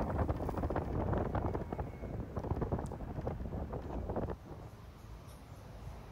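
Wind buffeting the microphone from riding in an open convertible car, with a rough, uneven rumble of air and road noise. About four seconds in it drops abruptly to a faint low hum.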